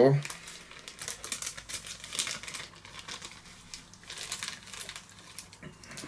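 Plastic specimen bag crinkling as it is handled in the hands and sealed, a run of irregular crackles.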